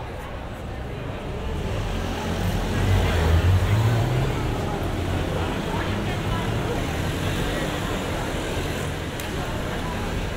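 A motor vehicle's low engine rumble swells to its loudest about three to four seconds in, then eases into steady traffic noise under the chatter of a crowd of pedestrians.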